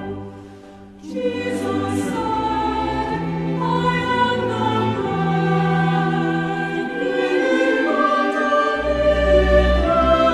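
Choral music with long held chords over a deep bass line. It dips briefly at the start and comes back in about a second in.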